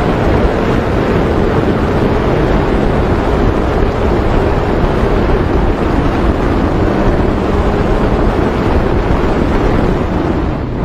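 Heavy wind rushing over the microphone of a camera on a sport motorcycle at speed, with the bike's engine running steadily underneath.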